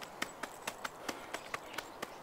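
A series of faint, sharp, irregular clicks or light taps, about five a second.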